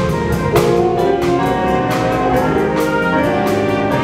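School jazz band playing: saxophones and brass hold chords over a drum kit keeping a steady beat.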